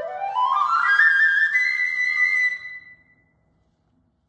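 Solo flute playing a rising run that climbs into a long held high note, which dies away about three seconds in. This is the final note of a rondo in Phrygian mode for unaccompanied flute.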